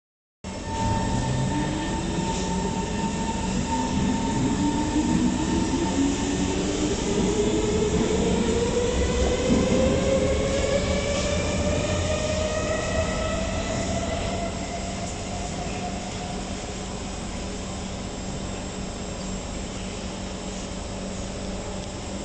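A metro train on the opposite track pulls away from the platform. Its traction motors give a whine of several tones that rises steadily in pitch and grows louder, then fades as the train leaves. A steady low hum runs underneath.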